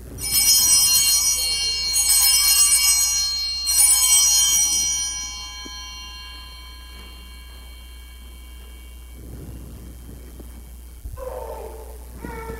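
Altar bells rung three times, about two seconds apart, each ring hanging on and the chimes fading out about halfway through. They mark the elevation of the host at the consecration.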